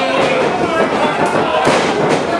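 Crowd yelling and cheering around a wrestling ring, with sharp slaps and thuds about a second and a half in as a wrestler is taken down onto the ring mat.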